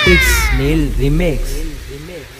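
DJ-mix transition effect: a pitched sweep falls steadily from high to low over about a second, over heavy bass. Low, wobbling, voice-like sounds follow, about twice a second, fading slightly toward the end.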